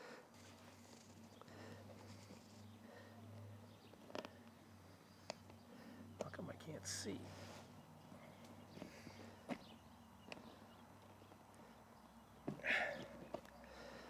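Faint handling rustle of a seat cover with a few isolated sharp clicks as hog ring pliers crimp hog rings to fasten the cover to the seat foam.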